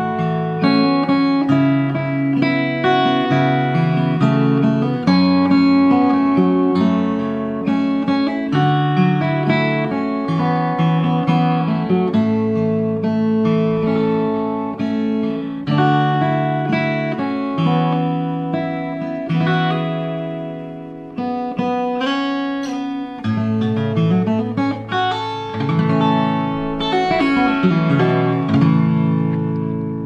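Enya EGA X1 Pro acoustic-electric guitar played fingerstyle unplugged, with its built-in speaker and effects off: bass notes picked under a melody and chords. The last chord rings out and fades near the end.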